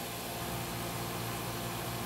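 Steady background hiss with a low, even hum underneath; no distinct sound event.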